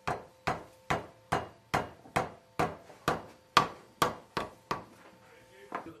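Wooden mallet knocking a cork bung into a small iron-hooped wooden beer cask, about a dozen even blows at roughly two and a half a second, with a short pause and one more blow near the end.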